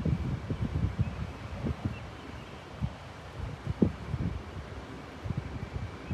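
Wind buffeting the microphone in uneven low gusts, heaviest at the start and easing in the middle, with a sharper bump near the end.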